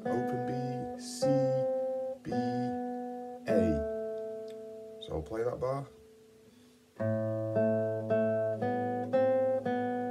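Nylon-string classical guitar played fingerstyle: a bass note with single melody notes plucked over it, each left to ring. About six seconds in there is a second's pause, then a quicker run of plucked notes.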